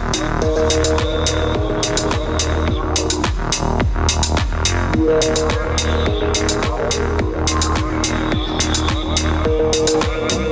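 Live-looped minimal electronic techno played on a Novation Circuit Tracks groovebox with a Boss RC-505 looper: a steady pulsing beat and bass with crisp percussion under held synth notes that shift every few seconds.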